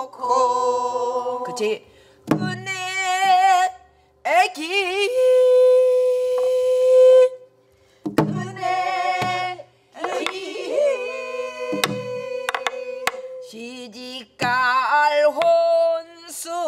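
Singing of a southern Korean folk song (Namdo minyo), held notes with a wide, shaking vibrato in phrases separated by short pauses, accompanied by a few sharp strokes on a Korean buk barrel drum played with a stick.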